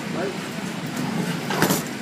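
Indistinct voices of people nearby over a steady hum, with one sharp knock about one and a half seconds in.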